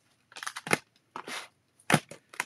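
Plastic packaging of clear-stamp sets rustling and crackling as it is handled, in a few short bursts, with a sharper click near the end.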